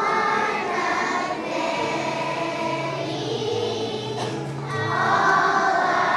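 A choir of first-grade children singing together, with low held accompaniment notes that change pitch joining underneath about two seconds in.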